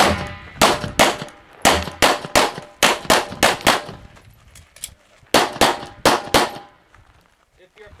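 Pistol fired in rapid strings: about ten sharp shots in the first four seconds, a pause of about a second and a half, then four more quick shots.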